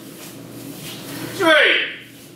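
A single short, loud shout near the end: an aikidoka's kiai cry as an attack is launched, sharply pitched and clipped off after about half a second.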